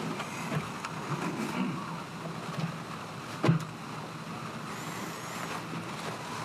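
Room tone with a steady low hum and faint rustling, broken by one sharp knock about three and a half seconds in.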